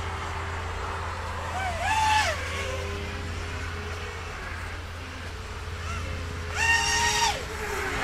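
EMAX Hawk 5 racing quadcopter's brushless motors and propellers whistling while running on a 3S battery. Two throttle bursts, about two seconds in and near the end, each rise in pitch, hold briefly and fall back, over a steady low rumble.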